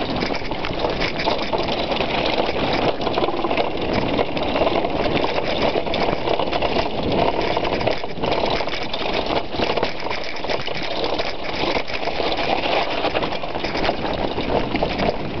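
Mountain bike riding fast over a rough, rocky trail, heard through a handlebar-mounted camera: a steady, dense rattle and rush of tyre, frame and wind noise.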